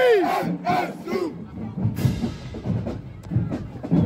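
Voices yelling a chant for about the first second, then a marching band drumline playing a cadence of sharp drum strikes.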